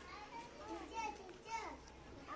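Faint, scattered chatter of several young children's voices overlapping one another.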